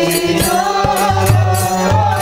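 Several voices singing a Bengali devotional bhajan together, kirtan-style, over a held keyboard chord. A low pulse repeats and hand-percussion strikes sound throughout.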